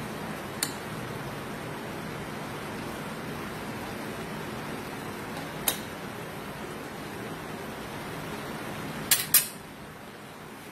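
A pan of chicken and vegetables sizzling steadily under a glass lid, with a couple of light clicks. Near the end come two sharp clinks of the glass lid against the pan as it is lifted off, and the steady sizzle drops a little after that.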